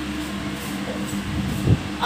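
A steady low mechanical hum, with a short dull thump near the end.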